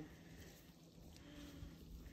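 Near silence: faint outdoor background with a low rumble and a brief faint pitched sound, likely a distant voice, about a second and a half in.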